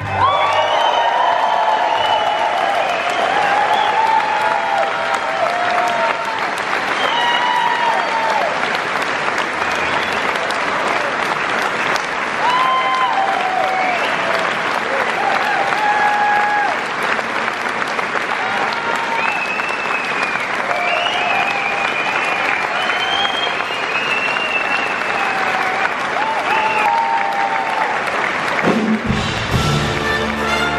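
Large concert audience applauding, with scattered cheers. About a second before the end, the big band starts its next number.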